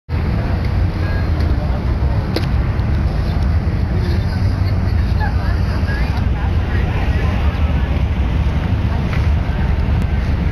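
A steady low rumble of wind buffeting a phone's microphone, with faint chatter from a crowd of onlookers.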